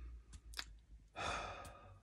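A man's audible sigh, one breathy exhale lasting about half a second beginning just over a second in, preceded by a couple of faint clicks.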